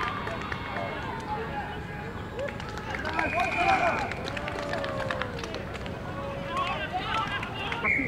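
Voices of a few spectators calling out and talking close to the microphone, with scattered short sharp knocks.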